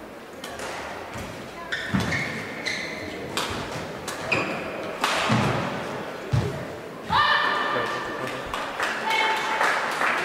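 Badminton rally: a shuttlecock struck back and forth by rackets, a string of sharp hits, mixed with players' footfalls and short shoe squeaks on the court mat in a large hall.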